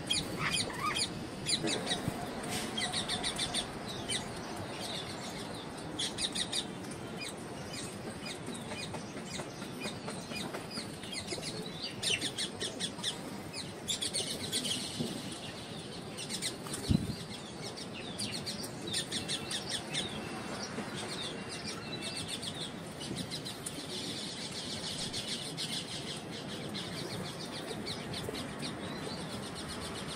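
Rose-ringed parakeet chattering in scattered bursts of quick, high chirps. A single thump just past the middle.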